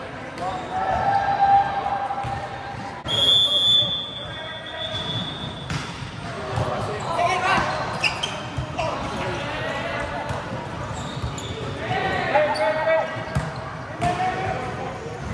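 Indoor volleyball rally: the ball thuds off players' forearms and hands while players shout calls, echoing in a large hall. A long, high whistle blast sounds about three seconds in.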